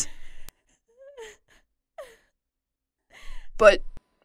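Mostly quiet, with two faint, brief vocal sounds about a second apart, the second falling in pitch, then a voice starts speaking near the end.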